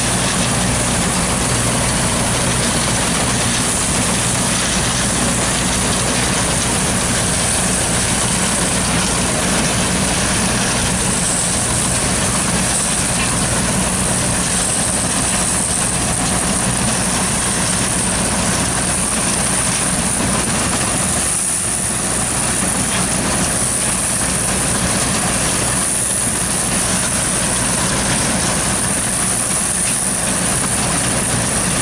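John Deere 4400 combine running under load while cutting soybeans. Its engine and threshing machinery make a steady mechanical drone with a low hum.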